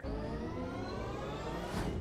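News-broadcast graphics transition effect: a rising whoosh of tones gliding upward over a low rumble, swelling into a short rushing sweep near the end.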